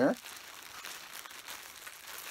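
Faint crinkling of a thin plastic bag wrapped around a balled-up t-shirt, handled and turned in the hands.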